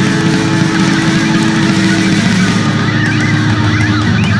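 Black thrash metal recording: heavily distorted electric guitars holding a sustained, droning chord over bass and drums, with wavering high guitar squeals about three seconds in.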